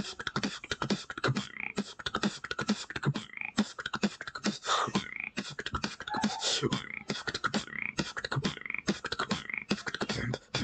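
Human beatboxing into a handheld wired earphone microphone: a fast, steady run of vocal kicks, snares and hi-hats, with short pitched vocal sounds mixed in.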